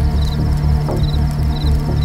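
Horror film score: a pulsing low bass drone under a steady low tone, with a small high chirping figure repeating about twice a second.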